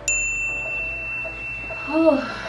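A single bell-like electronic ding: a sharp strike that leaves one steady high tone ringing on, while its higher overtones fade within about a second. It is the chime marking the end of a 15-second countdown timer.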